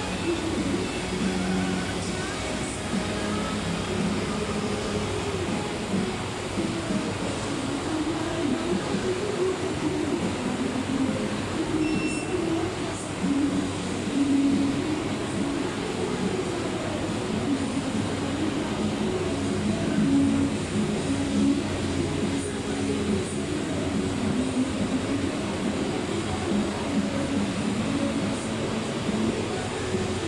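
Steady background rumble, with music playing underneath.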